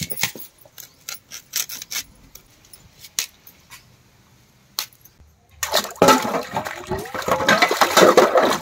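Crisp snaps and clicks of cauliflower stalks and leaves being cut on an upright floor blade (arivalmanai). After about five and a half seconds, water sloshing and splashing as hands wash a steel bowl in a plastic tub of water.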